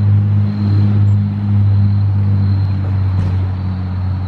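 A motor vehicle's engine running, a steady low hum.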